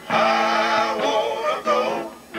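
Male vocal group singing live through a PA, with electric guitar accompaniment; the voices hold long, wavering notes.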